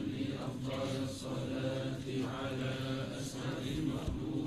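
A gathering chanting the salawat, the devotional blessing on the Prophet Muhammad, together in a slow repeated litany, with long held notes.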